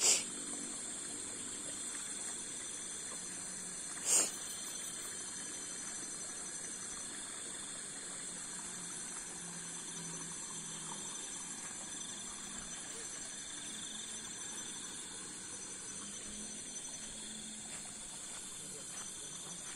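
A steady, high-pitched chorus of night insects. A single short, sharp sound cuts in about four seconds in.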